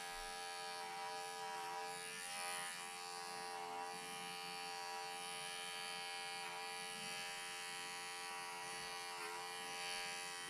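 Cordless electric clippers running with a steady buzz as they cut through angora rabbit wool.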